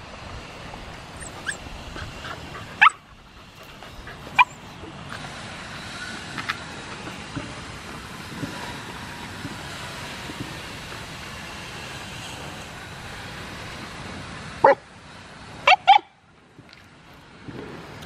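Dogs giving short, sharp yips over a steady background hiss: two single yips in the first five seconds, then three in quick succession about three quarters of the way through.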